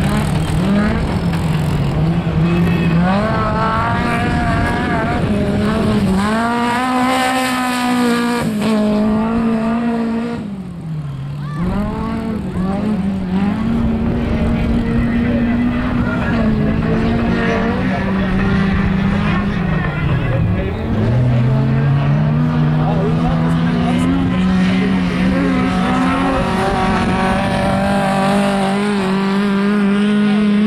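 Autocross special race car's engine at racing speed on a dirt track, holding high revs with its pitch dropping sharply twice as the throttle comes off, about a third and two-thirds of the way through, then climbing back up.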